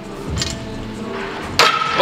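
Metal clinks from a loaded barbell during fast bench-press reps: a faint one about half a second in and a louder, ringing one near the end, over background music.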